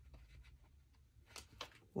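Faint rustling of paper sticker sheets being handled, with two soft brushes or taps about one and a half seconds in, over a low steady room hum.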